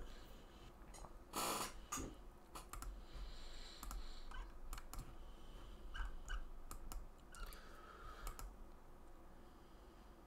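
Faint, scattered clicks and taps of a computer mouse and keyboard, with one brief hiss about a second and a half in.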